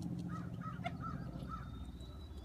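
A bird calling nearby: a quick series of about five short calls in the first second and a half, over a steady low rumble.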